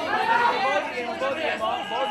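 Several voices shouting over one another at a kickboxing fight, the kind of yelling heard from the crowd and corners during a clinch.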